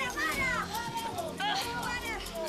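Several people shouting and yelling in high, strained voices over background music.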